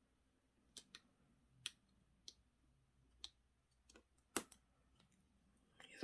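Faint scattered clicks and taps, a handful in all with the loudest about four and a half seconds in: small silicone fixing pins being pressed by hand into a paper circuit template.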